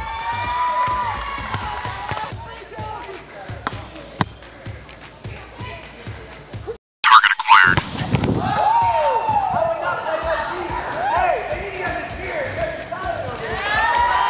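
Volleyball being hit and dug on a hardwood gym court: sharp ball impacts among many kids' shouts. The sound drops out briefly about halfway through and comes back with a loud hit.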